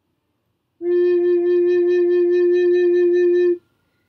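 Tenor recorder sounding its low F, one long steady note starting about a second in and held for nearly three seconds before stopping.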